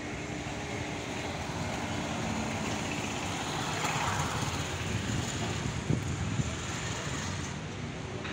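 Road traffic: a steady hum of engines and tyres, swelling as a vehicle passes close about halfway through, with a couple of short thumps a little later.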